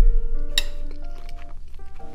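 A metal spoon clinks once against a ceramic plate about half a second in, over background music of held notes. A loud low rumble fills the start.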